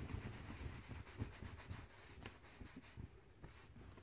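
A towel rubbed vigorously over a head of hair: faint, irregular rustling with soft thumps, quieter in the second half.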